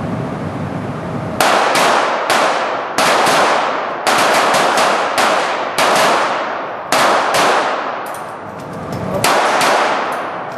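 A string of .22 pistol shots from several shooters firing on the line, each a sharp crack with an echoing tail. They start about a second and a half in, come as about fifteen shots, some in quick succession, pause briefly near the end, then resume.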